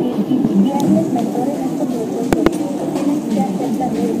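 People talking, with two short sharp clicks in quick succession a little past the middle.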